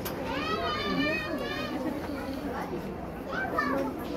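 Children's high-pitched voices calling out over a steady background of crowd chatter, with one long wavering call near the start and a shorter one near the end.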